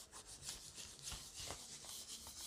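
Whiteboard eraser rubbing across a whiteboard, wiping off marker in a run of short, faint strokes.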